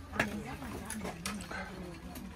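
Quiet voices in the background with several light clinks and knocks of plates and cutlery as dishes are set down on a wooden table.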